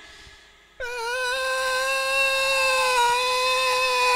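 A performer's long, drawn-out mock wail of grief, starting about a second in and held on one pitch for some three seconds with only a slight waver.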